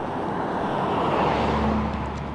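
A car passing on the road alongside, its tyre and engine noise swelling to a peak about a second in and then fading, with a low engine hum in the second half.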